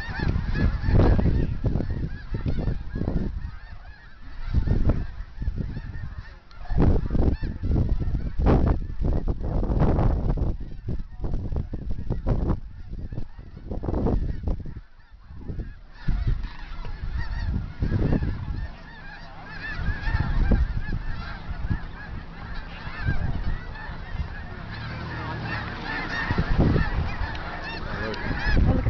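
A large flock of snow geese honking and chattering without pause, the calls thicker and more even over the second half. Low buffeting on the microphone comes and goes through the first half.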